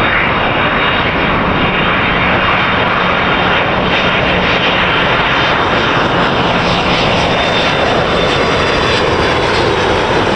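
Jet airliner engines, loud and steady, with a faint steady hum low down; near the end the sound leans toward lower pitches.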